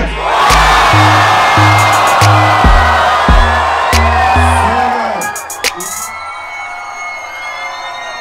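Concert crowd cheering and shouting over the pulsing bass line of live rap music. The noise drops away about five seconds in.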